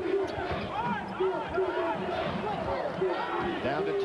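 Arena sound from a basketball game: a ball dribbling on the court and many short rising-and-falling squeaks of sneakers on hardwood, over crowd noise.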